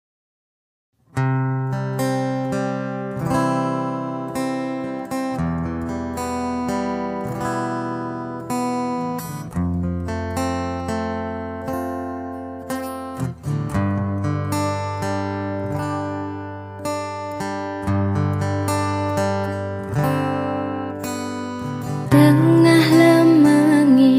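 Instrumental song intro on acoustic guitar: plucked notes that ring and fade over a low bass line, starting about a second in after a moment of silence.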